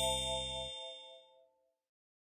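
The last note of the background music with a bright chime ringing over it. The low notes stop under a second in, and the chime fades out by about a second and a half.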